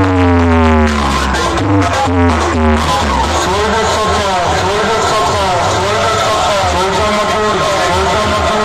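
A rack of horn loudspeakers playing a DJ dialogue mix loudly. For about three seconds it is a heavy-bass electronic track with downward-sliding synth tones; then the bass drops out and a wavering spoken-dialogue voice comes through the horns.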